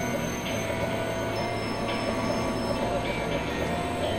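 Experimental industrial synthesizer music: a dense, steady wash of noise with held drone tones layered through it, and a thin high tone that comes in about a second and a half in and stops shortly before the three-second mark.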